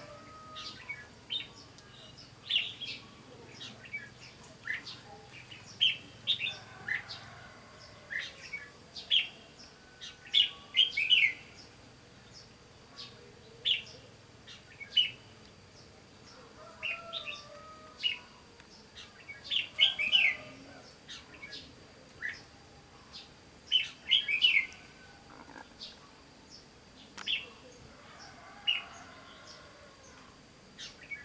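Red-whiskered bulbuls singing: short, bright chirping phrases every second or two, sometimes several in quick succession.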